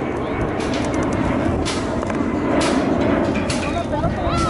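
Steady low rumbling background noise with faint distant voices, and several short hissing sounds about a second apart.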